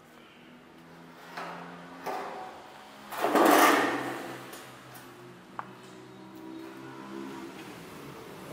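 A loud rushing, scraping noise lasting about a second, starting about three seconds in, with a few sharp knocks, over faint background music.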